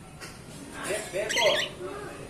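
Cockatiel giving a short squawking call about a second in, rising to a high, harsh peak before it stops.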